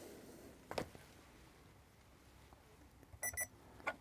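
Two short, high electronic beeps close together from a small digital espresso scale as it is switched off, after a faint click about a second in.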